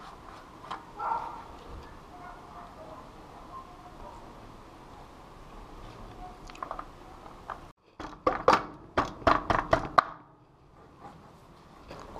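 Metal bicycle drivetrain parts being handled as a bottom bracket spacer and crankset are fitted: faint scattered clicks at first, then about two-thirds of the way in a quick run of about seven sharper clicks and knocks over two seconds.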